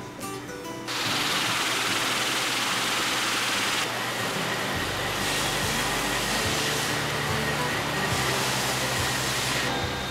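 Metal-cutting machinery starts about a second in and runs steadily, including a band saw cutting aluminium bar stock under flowing coolant; the sound changes character a few times. Music plays underneath.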